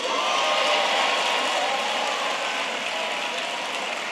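Part of a seated audience applauding, a steady patter of clapping that slowly tapers off.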